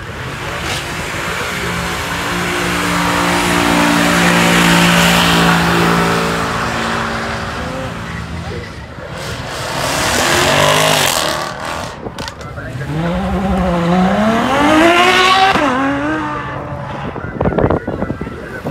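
Jaguar F-Type sports car engine held at steady high revs on the start line for several seconds, then launching away. The revs climb, break at a gear change and climb again as the car accelerates hard past.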